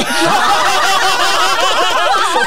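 Several people laughing loudly together, breaking out all at once and going on throughout.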